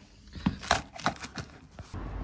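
Footsteps in work boots on a tiled floor: a handful of quick steps, about three a second.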